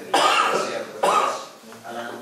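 A person coughing twice, about a second apart, each cough sudden and loud.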